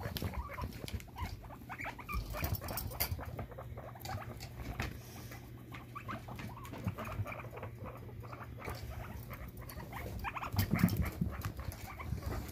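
Guinea pigs scurrying and scuffling over fleece bedding and a wire-grid tunnel: rapid pattering footsteps and small knocks, with faint short squeaks of the kind Gus makes when he cries.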